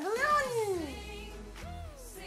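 Music playing, with a long meow-like call that rises and falls in pitch over the first second and a shorter one near the end.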